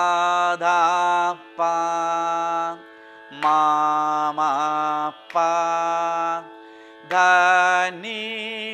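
A man's voice singing a series of short Carnatic phrases in raga Mayamalavagowla, some with wavering gamaka ornaments, the first opening with an upward slide. A steady drone sounds behind the voice and goes on through the pauses between phrases.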